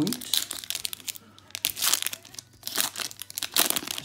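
Foil Pokémon TCG booster pack wrapper crinkling in the hands as it is torn open, in irregular bursts of crackle.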